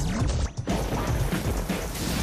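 Television intro sting: music with sound-effect hits, a short drop about half a second in and then a sudden loud crashing hit that carries on into the music as the logo appears.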